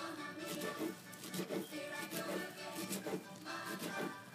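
A chef's knife chopping fresh cilantro on a cutting board in a series of light taps, over faint background music.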